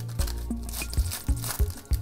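Foil wrapper of a Panini Spectra card pack being torn and crinkled by hand for about a second in the middle, over background electronic music with a steady beat.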